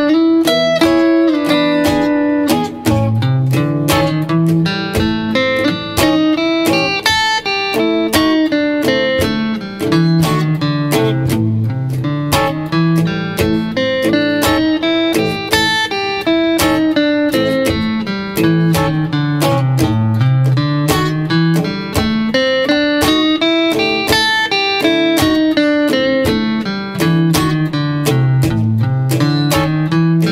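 Clean electric guitars playing a 12-bar blues shuffle in A: a boogie riff on the low strings climbs and falls over and over. From about halfway through, a second guitar plays notes of the A blues scale, the pentatonic with an added flat five, over the backing.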